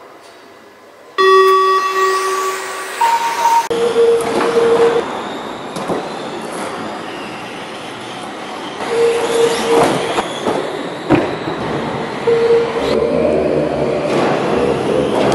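Radio-controlled model touring cars racing on an indoor track: a continuous mechanical running noise in a reverberant hall, with a held steady tone sounding several times and a few sharp clicks.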